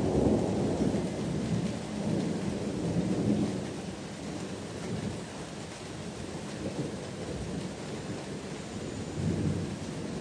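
Rolling thunder, a low rumble that is loudest over the first three or four seconds and then dies away, with a smaller swell near the end. Steady rain hisses underneath.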